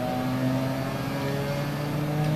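A steady low mechanical hum made of a few constant pitched tones, with no clicks or changes.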